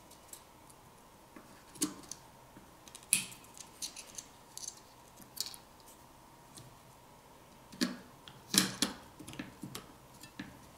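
Scattered small clicks and taps of fingers handling a smartphone's motherboard and cables as it is pressed back into the phone's frame, with the sharpest tap about three seconds in and a cluster of louder knocks near the end.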